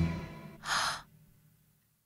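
The last of the music fades out, then one short breath, a sigh or gasp, a little after half a second in.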